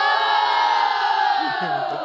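A group of children cheering together in one long held shout that slowly falls in pitch, with a lower voice joining near the end.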